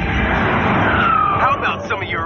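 TV action-show sound effects: a loud rushing blast with a falling whistle about a second in, then shouting voices near the end.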